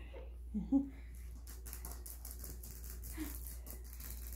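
Young puppies moving about on a fleece bed: soft rustling and faint scratchy ticks, with a brief low vocal sound about half a second in.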